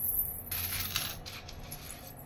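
Silver anklets (payal) jingling and clinking as they are lifted and handled, their small metal bells and links rattling together in a short burst about half a second in, then a few fainter clinks.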